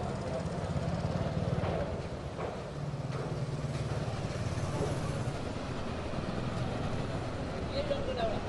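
A steady low rumble with faint, indistinct voices over it.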